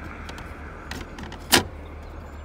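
A sharp click about one and a half seconds in, with a fainter tick shortly before, as a hand pushes the loose piece of a Chevrolet Camaro convertible top's folding linkage. The piece should spring back into place but is loose, its iron link broken.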